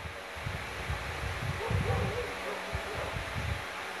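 Pause in speech: low, irregular rumbling on the microphone, with a faint voice briefly about halfway through.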